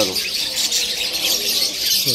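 Many caged birds chirping and chattering together in a dense, unbroken chorus.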